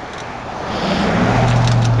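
A motor vehicle's engine hum comes in about a second in: a steady low drone that grows louder.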